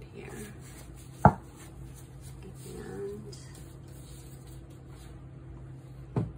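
Handling sounds as a plastic funnel pitcher of thick soap batter is wiped clean with a towel, with one sharp knock about a second in, over a steady low hum.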